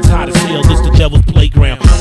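Hip hop track: a male rapper's verse over a beat with heavy, booming bass hits.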